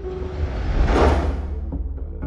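A whoosh sound effect that swells to a peak about a second in and fades, over a low rumbling drone of the film's score.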